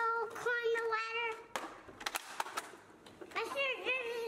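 A young child's high-pitched voice, with a few sharp clicks and knocks of hard plastic toy parts in the middle.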